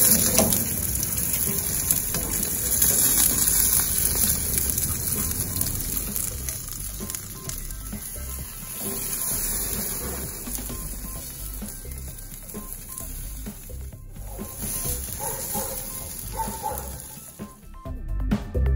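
Pomfret sizzling in a perforated metal grill pan on a hot barbecue grill: a steady frying hiss, louder in the first few seconds, with faint background music.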